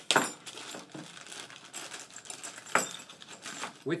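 Small hard parts and tools being handled on a chainsaw. A sharp knock comes right at the start, then light metallic jangling and clicking, with one sharper click about three-quarters through.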